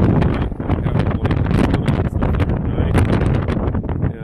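Strong, gusty wind blowing like crazy and buffeting the microphone, making a loud, uneven rush full of sharp spikes.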